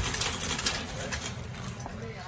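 Metal shopping cart rolling over a smooth concrete store floor: a steady low wheel rumble with small rattles from the wire basket.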